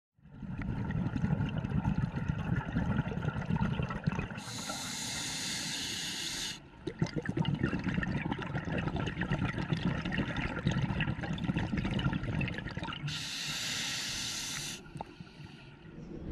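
Scuba diver breathing on a regulator underwater: a long rush of exhaled bubbles, a hiss of inhalation a little over four seconds in, more bubbles, then a second inhale hiss near the end.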